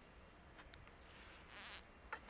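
A short slurping sip from a lidded paper cup, close to a headset microphone: a brief hiss about a second and a half in, over quiet room tone.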